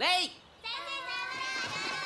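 A short called-out syllable, then about a second in, a class of children's voices calling out together in unison, drawn out and steady: a class responding to a rise-and-bow command.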